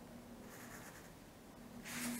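Faint scratching of a fineliner pen on paper as a line is drawn.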